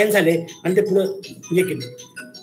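A man talking over a video-conference call, in phrases with short pauses between them.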